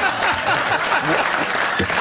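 Studio audience applauding, with laughter mixed into the clapping.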